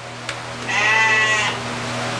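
A lamb bleating once, for just under a second, over a steady low hum.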